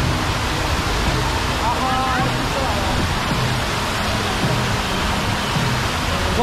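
Tall fountain jets spraying and splashing down into the basin close by, a steady, even rushing of water.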